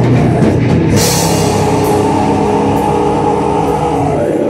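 Live black metal band playing at full volume: distorted electric guitar and drum kit, with fast drumming at first, a cymbal crash about a second in, then held guitar chords ringing on.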